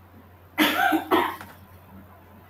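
A person coughing twice in quick succession, two short, sharp coughs about half a second apart.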